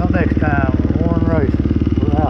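Dirt bike engine running steadily at low revs close to the microphone, with short calls of voices over it.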